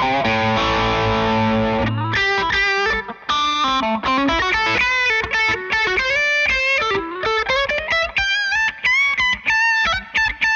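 Epiphone Les Paul Muse electric guitar played through an amp. A chord rings for about two seconds, then a run of single-note lead lines with a few bends.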